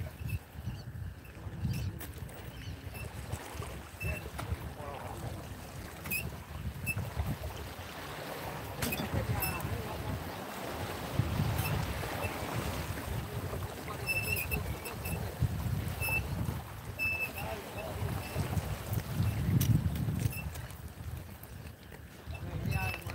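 Wind gusting over the microphone in a low, uneven rumble, with choppy water washing against the shoreline rocks.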